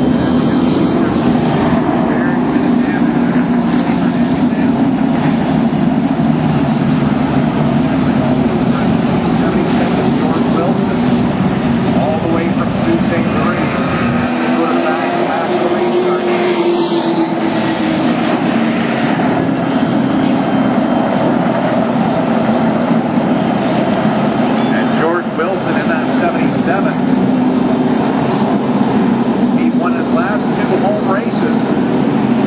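Outlaw super late model race cars' V8 engines running at reduced caution pace around the oval, a continuous drone that shifts in pitch as the field passes close about halfway through.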